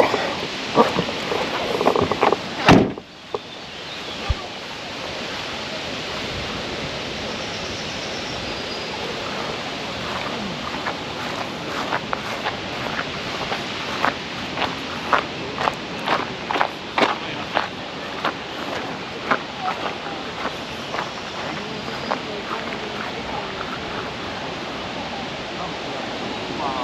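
Car door being handled and slammed shut about three seconds in. Then a steady wind-like hiss with a run of footsteps on dry grass and a sandy path.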